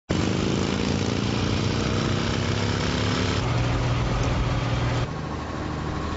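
Motor vehicle engine running with road noise, its pitch falling slowly over the first three seconds. The sound changes abruptly twice, about three and a half and five seconds in, to a steadier deep hum and then a quieter engine.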